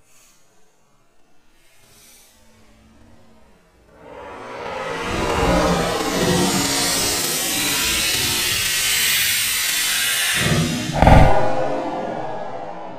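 Ether lit to seat a tire bead: a loud rushing hiss of burning ether starts suddenly about four seconds in and runs for several seconds, with a few low knocks. A short, louder low thump comes near the end.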